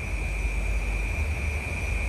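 Steady background ambience in a pause: a continuous high insect trill like crickets, over a low steady rumble.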